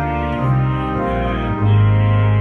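Organ playing a hymn in sustained chords, with a louder low bass note coming in near the end.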